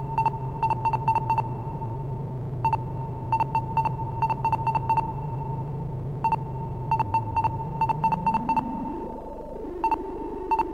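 Homemade modular synthesizer playing short, high electronic beeps in stuttering clusters with brief gaps between them, over a steady low drone. Near the end the drone dips, then glides up in pitch.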